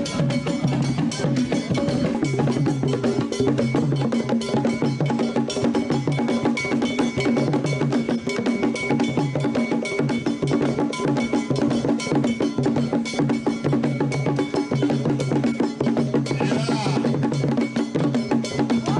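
Percussion music of drums and a bell playing a busy, steady beat.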